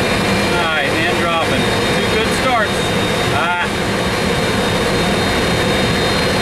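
Steady drone and high whine of a GE CF6 turbofan running on an A300-600, heard inside the cockpit just after start, its exhaust temperature having peaked at 512 and now coming down as it settles. Voices come in briefly a few times over it.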